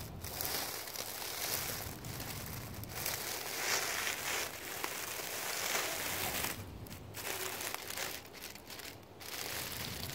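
Dry leaves crunching and crackling under the tyres of an Axial SCX10.2 scale RC crawler as it climbs through leaf litter, with brief pauses in the second half.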